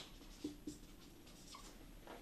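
Faint strokes of a dry-erase marker writing on a whiteboard, with two short squeaky strokes about half a second in.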